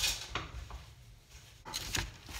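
A wooden spoon stirring cubed quince with sugar and water in a stainless steel pot: short scrapes and knocks against the pot near the start and again near the end, with a quieter spell in between.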